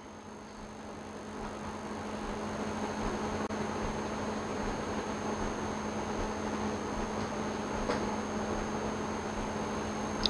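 Steady room noise: an even hiss with a low, steady hum. It grows a little louder over the first couple of seconds, then holds.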